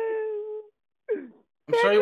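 A man wailing in a high, drawn-out put-on cry: one long wail that sinks slightly and fades out within the first second, a brief falling sob, then another steady high wail near the end.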